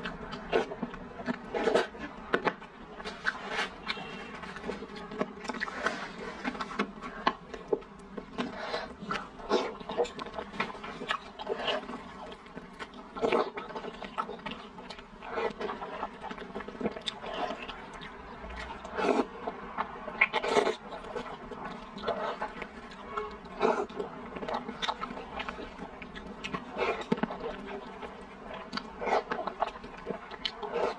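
Close-miked eating: a person chewing and slurping soft rice noodle rolls in chili sauce, with many short, irregular wet mouth sounds throughout.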